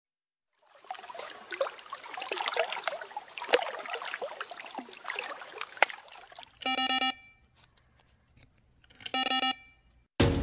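A crackling, rustling noise full of small sharp clicks for about five seconds, then two short electronic beeps, each about half a second long and about two and a half seconds apart.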